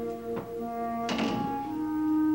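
Background score of sustained held notes, moving to a new chord near the end. About a second in comes a single thunk, a door shutting.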